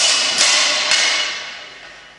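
Steel swords and bucklers clashing in a sword-and-buckler drill: three sharp metallic strikes within the first second, each ringing out and fading.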